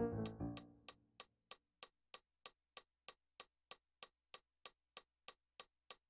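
Digital piano notes dying away over the first second, leaving a metronome clicking steadily on its own at about three clicks a second.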